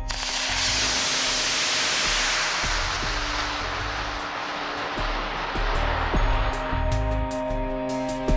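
Ten model rocket motors fired at once: a loud rushing hiss that starts suddenly and slowly fades over about five seconds. Background music with a steady beat plays throughout.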